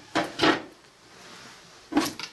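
Wooden bedside-table drawer knocking and sliding as a hand rummages through it: two sharp clunks close together near the start and another at the end.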